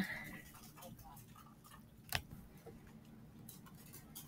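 A single sharp click about two seconds in, over quiet room tone: a computer mouse or trackpad click that advances the page in the book viewer.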